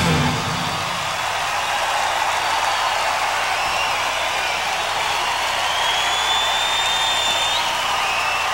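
Large stadium crowd cheering, with shrill whistles rising above it, as the band's music stops just after the start.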